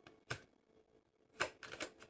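Tarot cards being shuffled by hand, faint: one card click, then a quick run of clicks and flicks starting about a second and a half in.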